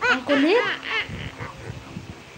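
A young girl laughing: a few quick, high-pitched bursts in the first second, then quieter.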